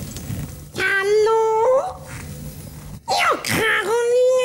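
A ventriloquist's high-pitched puppet voice making wordless, drawn-out vocal sounds: one long held note about a second in that rises at its end, and another near the end that swoops sharply down in pitch before holding.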